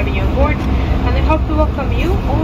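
Indistinct speech over the steady low rumble of an airliner's cabin noise.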